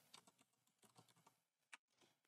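Faint computer keyboard typing: a quick, irregular run of light keystrokes, like a short component name being typed into a search box.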